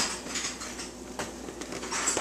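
Quiet rubbing and small clicks of hands gripping a rubber balloon stretched over a plastic bottle, with a faint hiss beneath.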